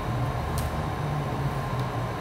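Steady low hum and rumble of a room air conditioner, with two faint ticks, about half a second in and near the end.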